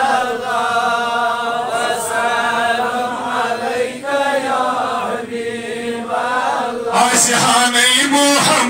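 A man's voice chanting a devotional verse in long, held, slowly wavering notes, growing louder near the end.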